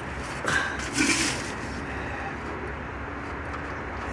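Oil pan drain plug being unscrewed by hand, freshly broken loose: a couple of short soft scrapes about half a second and a second in, over a steady low hum.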